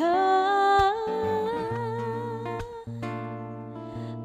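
Acoustic guitar chords under a wordless sung note that slides up at the start and is held for about three seconds, then fades as the guitar carries on.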